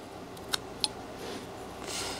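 Whittling knife cutting into a small wooden carving: two sharp little clicks about a third of a second apart as the blade snaps through the wood, then faint scraping shaves.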